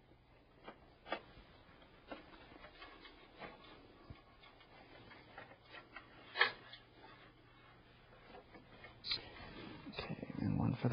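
Faint, scattered clicks and taps of plastic connectors and cables being handled as a power supply's drive power connector is pushed onto a drive inside a computer case. The loudest click comes a little after the middle.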